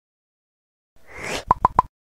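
Intro animation sound effect: a short swelling whoosh, then three quick pops about a sixth of a second apart, each with a brief tone.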